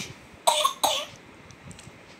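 Infant making two short, breathy, cough-like vocal sounds in quick succession, about a third of a second apart.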